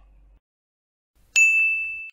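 A single bright ding chime, starting suddenly about a second and a half in with one clear ringing tone that fades quickly before cutting off. It works as a transition chime, marking the switch to the vocabulary review.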